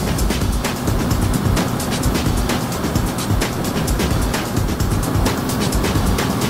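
Background music over the steady rush of wind and engine noise of a Kawasaki ZRX1100 motorcycle riding along at speed, heard through a helmet-mounted microphone.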